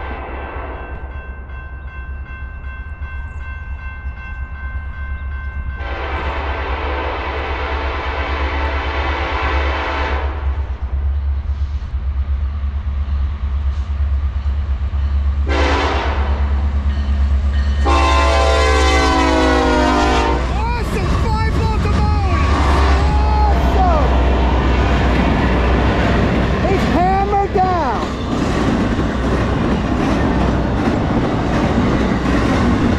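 Norfolk Southern freight train with five diesel locomotives, led by an EMD SD70ACe, approaching and passing, its engine rumble growing steadily louder. The lead locomotive's horn sounds a faint first note, then a long blast, a short one and a final long one. In the last third the rumble of the cars passing close by carries high wavering squeals from the wheels.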